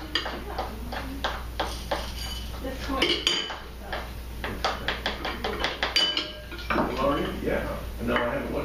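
Spoons clinking and scraping against small bowls in quick, irregular taps, as flour and rice are scooped into balloons to fill stress balls.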